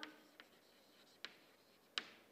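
Chalk writing on a chalkboard: faint scratching strokes broken by a few sharp taps of the chalk, the clearest a little past a second in and right at the end.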